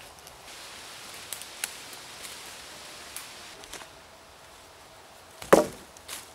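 A single sharp knock of wood striking wood about five and a half seconds in, the loudest sound here, after a few faint ticks and rustles over a low hiss.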